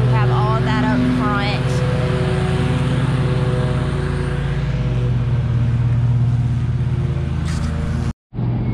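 An engine running steadily nearby, a low even hum that dips briefly about halfway through.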